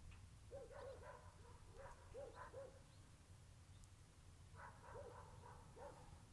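A dog barking faintly in short bursts of two or three barks, with pauses of a second or two between them, over a steady low rumble.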